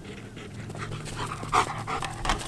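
German shepherd panting hard while running, a quick run of rasping breaths, with one louder burst about three-quarters of the way through.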